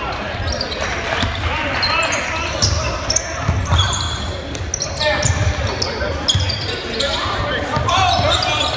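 A basketball bouncing on a hardwood gym floor with irregular thumps, mixed with short, high sneaker squeaks from players cutting on the court, all echoing in a large gym.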